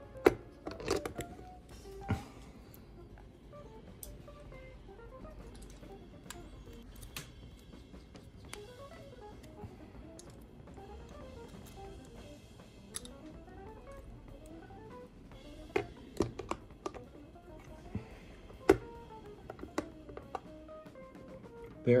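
Small metal clicks and taps as a driver and the parts of a Sophia tremolo bridge are worked and handled, with a few sharper knocks among them. Faint background music runs underneath.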